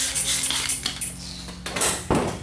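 Hand trigger spray bottle spritzing application solution onto a headlamp: a short hissing spray at the start and another near the end.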